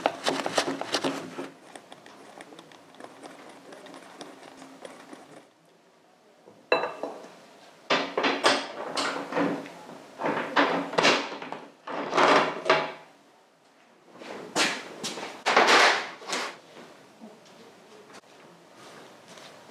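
Metal motorcycle roller chain clinking and rattling as it is handled, pulled off the sprockets and laid down, coming in several bursts of clatter with quieter pauses between.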